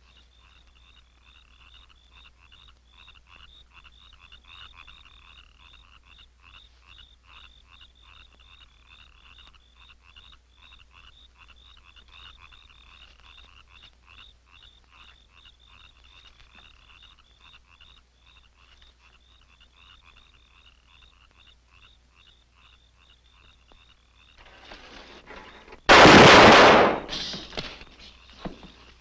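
Night-time chorus of small creatures chirping in a quick, even pulse. About two seconds before the end, noise swells briefly and then a single very loud blast cuts in, fading over about a second.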